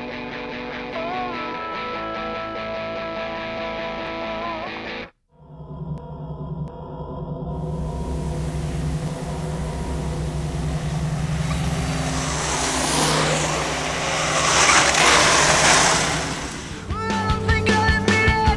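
Guitar music that cuts off about five seconds in, followed by the rolling sound of mountainboards on a dirt road: a steady low rumble under a rushing noise that swells loudest a few seconds before the end and then drops away. Rock music comes back in near the end.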